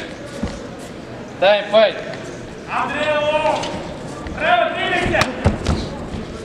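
Men shouting in bursts during a kickboxing bout, with a referee calling "Stop! Stop! Stop!" near the end. A few sharp thuds, strikes landing, come in the last second.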